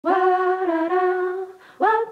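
A voice humming long held notes in a slow melody, stepping slightly in pitch, with a short break about a second and a half in before the next note begins; a sampled vocal opening a lo-fi hip-hop beat.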